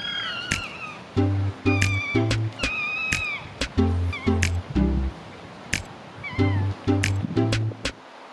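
Ezo red fox giving high, wavering whining cries: three drawn-out calls in the first three seconds, then two short ones. Background music with a steady beat plays under them.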